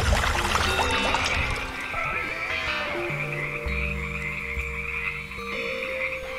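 Rain-like noise fades away over the first two seconds, and then a steady, high trilling chorus holds over sustained low tones of the score.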